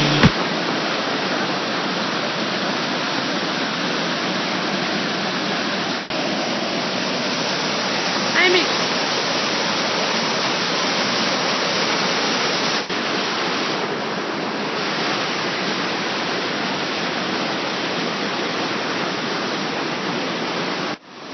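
Small waterfall pouring over boulders: a loud, steady rush of water that runs on without change.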